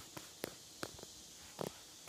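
Faint footsteps on a dirt trail, heard as a few scattered soft clicks and one duller knock late on.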